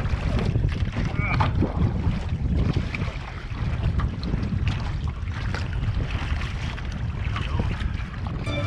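Wind buffeting the boat-mounted microphone in a steady low rumble, over choppy water, with the splashes of an outrigger canoe paddle's strokes.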